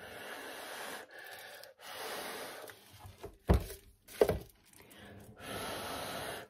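A person blowing hard by mouth on freshly poured acrylic paint to push it across a coaster tile. Several long breathy blows, with two short, louder low thumps in the middle.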